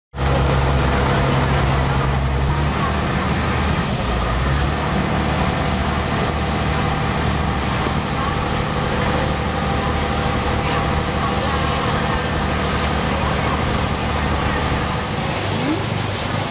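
Engine of a Bangkok river express boat running with a steady low drone under the rush of water and wind. Passenger voices mix in. The drone drops out shortly before the end.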